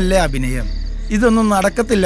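A man's wordless voice making two drawn-out moans that fall in pitch, about a second apart, over a steady chirring of crickets.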